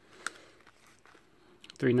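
A single sharp click about a quarter second in, then faint rustle and ticks from a small cardboard box being turned over in the hands. A man's voice starts near the end.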